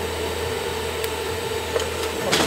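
TIG welding arc on 3 mm steel, a steady hiss with a faint held hum under it.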